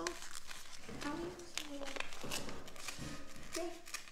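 Paper seed packet crinkling and tearing as it is opened by hand, in a run of short crackles and rips.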